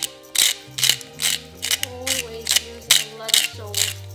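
Salt mill being twisted by hand, grinding salt into a bowl of oil in a steady rhythm of about two to three gritty ratcheting strokes a second.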